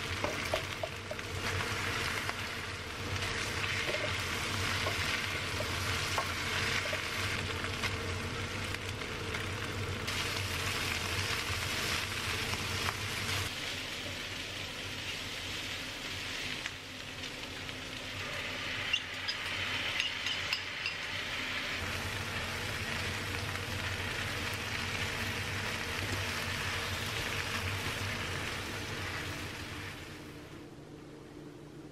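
Chicken, egg and rice-noodle stir-fry sizzling steadily in a frying pan as it is stirred and tossed with a spatula, with a few sharp ticks of the spatula against the pan.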